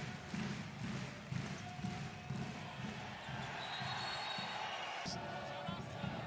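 Arena crowd noise with a handball bouncing repeatedly on the court floor. A long, steady whistle sounds about halfway through.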